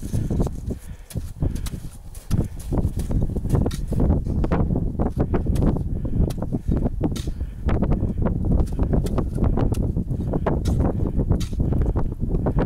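Gusty wind rumbling on the microphone, with irregular crunching of crampon-shod boots in hard snow.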